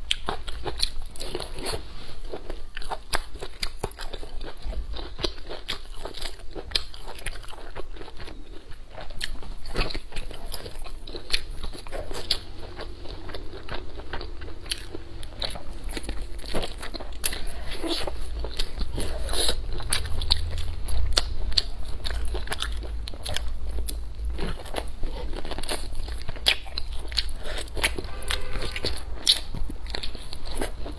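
Close-miked biting and chewing as meat is eaten off a glazed fried pork rib, with dense, sharp mouth clicks throughout.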